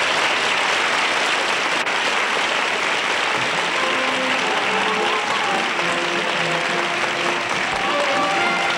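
Theatre audience applauding and cheering at the end of a musical number. About three and a half seconds in, band music starts up under the applause.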